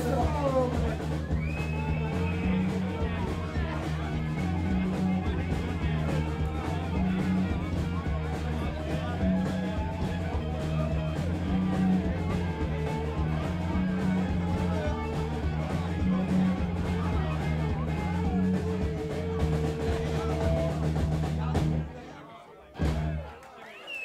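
Live rock band playing a glam rock number at full volume: a Pearl drum kit keeping a steady beat under electric guitar and bass. The music stops right at the end.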